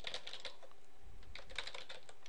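Computer keyboard typing: a quick, continuous run of keystrokes.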